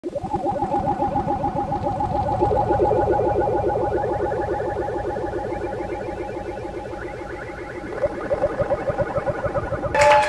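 Live band's amplified music: a sustained chord pulsing rapidly many times a second, with higher notes stepping in over it every couple of seconds, fading a little before swelling again near the end.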